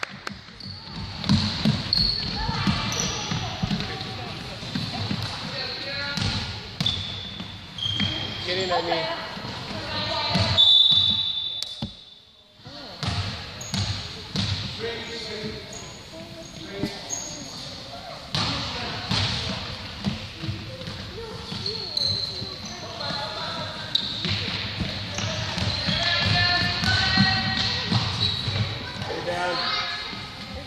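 Game sounds of a youth basketball game on a gym floor: the ball bouncing, short high squeaks of sneakers, and players and spectators calling out. A single referee's whistle blast sounds about ten seconds in.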